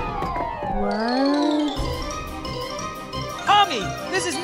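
A cartoon sound effect: a pitched tone glides down over about two seconds as the shot character collapses, then cuts off. Near the end comes a short run of quick rising-and-falling tones.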